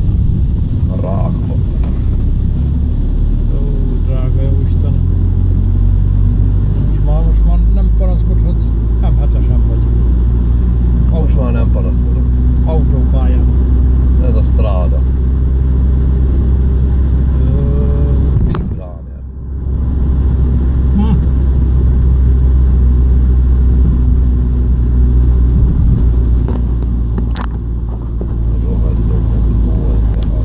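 A car's engine and road noise heard inside the cabin while driving, a loud steady low drone. It briefly dips about two-thirds of the way through, then picks up again.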